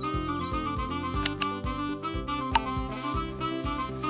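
Background music with a steady beat, with a few sharp clicks about a second in and again past the middle.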